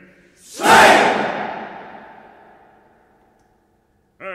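A single loud crash from orchestra and chorus together, struck once about half a second in, with its reverberation dying away over about three seconds into silence.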